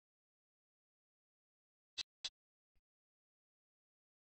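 Near silence broken about halfway through by two short, sharp clicks a quarter second apart, followed by a much fainter third click.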